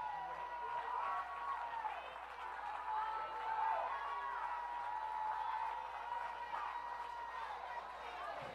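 Congregation rejoicing: many voices calling out and praising at once, with some scattered clapping, heard faintly across the room.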